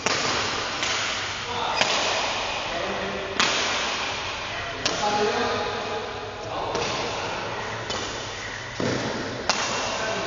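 Badminton rackets striking a shuttlecock during a rally: sharp cracks about every one and a half seconds, with a duller thud near the end, ringing in a large hall.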